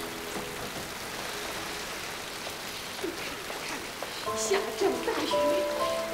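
Steady rain falling, an even hiss. About four seconds in, sustained music notes come in over it.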